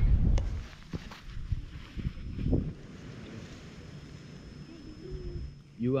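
Wind buffeting the microphone with a low rumble that dies away about half a second in. After that comes a quieter outdoor background with a few faint clicks and faint distant voices, then a man speaking near the end.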